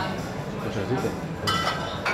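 Bar background of faint chatter, with a clink of tableware ringing briefly about one and a half seconds in.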